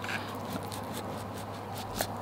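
Small knife drawn through the rough, sandpapery skin of a ripe mamey sapote: a quiet scratchy scraping made of many small ticks.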